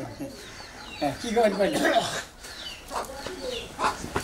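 A person's voice in short vocal bursts, one stretch about a second in and a weaker one near the end, with a brief pause between.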